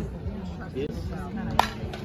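Softball bat hitting a pitched ball: one sharp crack about one and a half seconds in, over spectators' chatter.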